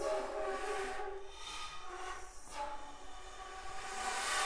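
Flute ensemble of piccolos, flutes and alto flutes holding sustained, overlapping tones that form a dense chord. Swells of breathy air noise come and go over the held notes, and the chord thins and grows quieter in the middle.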